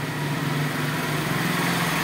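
Small goods truck's engine idling, a steady low hum, with a broad rushing noise that swells over the second half.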